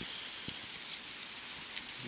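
Rain falling outdoors as a steady hiss, with one faint tick about half a second in.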